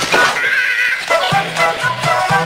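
Tech house electronic track: the bass and kick drop out for about a second under a high synth sound, then the beat comes back in.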